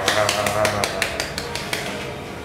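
Hand clapping: a quick run of sharp claps, about six a second, that stops shortly before the two seconds are out. A voice speaks under the first claps.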